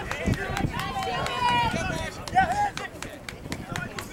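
Men's voices shouting calls across an outdoor rugby sevens pitch, overlapping and loudest in the first half.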